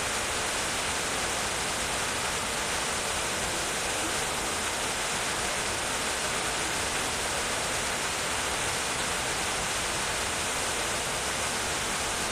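A steady, even hiss of noise at a constant level, with no events in it.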